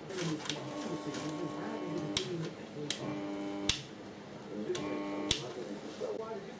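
Microwave-oven transformer driving a series string of high-pressure sodium lamps, humming in three short spells, each switched on and off with a sharp click.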